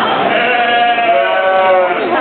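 A sheep bleating: one long call lasting well over a second, over the hubbub of a crowd in a show arena.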